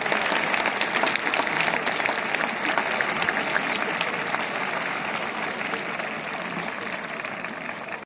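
Large stadium crowd applauding, a dense mass of handclaps that slowly dies down.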